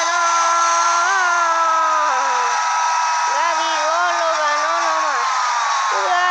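A man's voice holding long, drawn-out shouted notes in two long stretches with a short break about two and a half seconds in, over steady stadium crowd noise.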